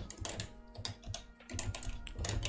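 Typing on a computer keyboard: scattered keystrokes, sparser and quieter around the middle.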